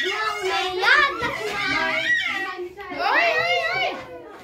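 Children's high-pitched voices talking and calling out while they play.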